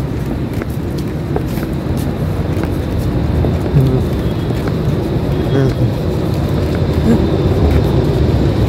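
Steady low rumble of city street traffic, with brief snatches of voices.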